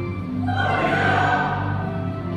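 Church choir singing an anthem over a sustained instrumental accompaniment, the voices entering about half a second in and swelling.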